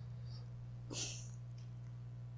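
A pause in a man's talk: a steady low hum, with one short, hissy breath from the speaker close to his lapel microphone about a second in.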